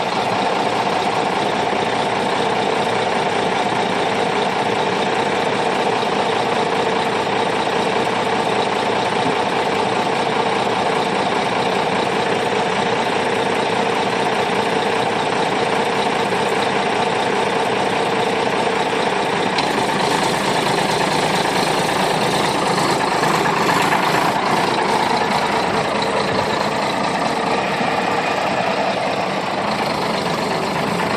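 Boat-hauling semi truck's diesel engine running steadily, getting somewhat louder and heavier about twenty seconds in as the rig starts to pull the loaded boat trailer away.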